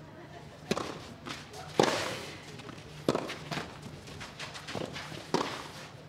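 Tennis rally: a ball struck back and forth with rackets, a sharp hit every second or so, about six in all.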